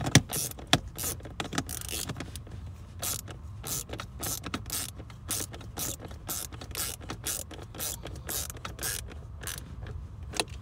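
Socket ratchet clicking in short back-and-forth strokes, about three a second with a short pause, driving in the bolts of a blower motor resistor. A low steady hum runs underneath.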